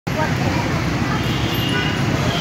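Steady engine and traffic noise with indistinct voices mixed in.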